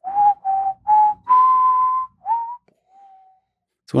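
A person whistling a melody from a film theme: three short notes, a long higher held note, a quick note that slides upward, then a faint lower note to close.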